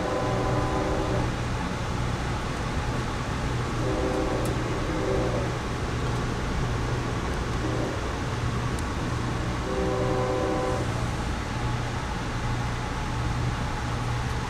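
Locomotive horn sounding for a grade crossing, heard muffled from inside the passenger coach: a long blast at the start, two shorter blasts about four seconds in, and another long blast about ten seconds in. Under it runs the steady low rumble of the moving train.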